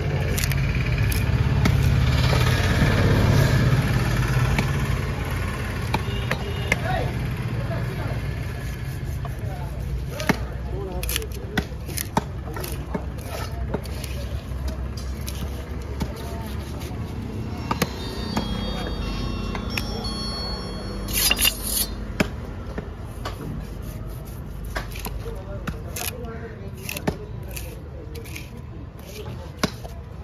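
A heavy fish-cutting knife chopping through a yellowfin tuna loin into steaks, each stroke landing on a wooden chopping block with a sharp knock, at an irregular pace of about one a second. A low rumble sits under the first few seconds.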